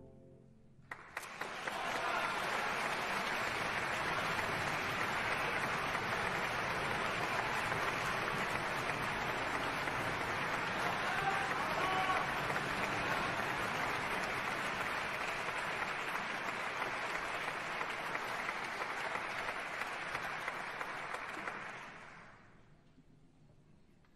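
The last orchestral chord dies away, then a concert-hall audience breaks into steady applause, starting with a few scattered claps about a second in and fading out near the end.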